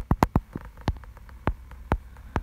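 A string of sharp, irregular clicks and taps from fingers on the recording smartphone as it is handled and its screen tapped. There are four quick clicks in the first half second, then single clicks about every half second.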